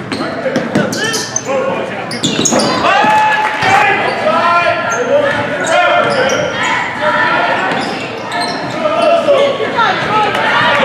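Basketball being dribbled on a hardwood gym floor, with repeated sharp bounces and short high sneaker squeaks as players run the court. Players and spectators call out over it, all echoing in a large gym.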